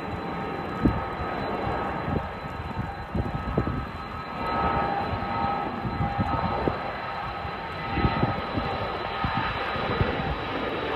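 Regional airliner's engines at takeoff power, heard at a distance as a steady rumble with a faint whine that grows a little about halfway through. Gusts of wind buffet the microphone.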